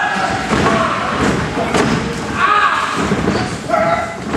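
Repeated thuds and knocks of wrestlers' bodies and feet on a wrestling ring's canvas, with people's voices calling out in the hall.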